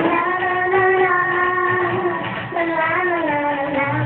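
A young girl singing, holding one long steady note for nearly two seconds, then, after a short breath, a shorter note that bends up and back down.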